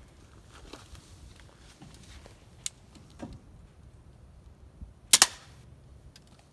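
Pistol crossbow firing a plastic bolt: one sharp, loud double snap about five seconds in as the string releases.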